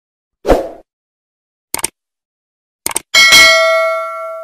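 Sound effects of a subscribe-button animation: a thump about half a second in, two quick double clicks like a mouse button, then a notification-bell ding that rings on and fades.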